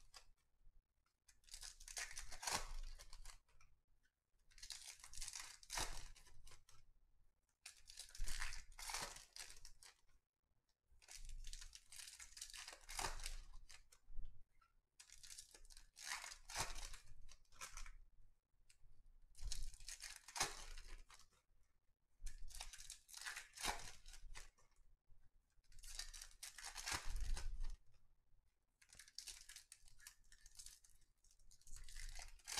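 Wrappers of 2021 Topps Series 1 baseball hobby packs being torn open one after another, a crinkling tear roughly every three seconds with short quiet gaps between.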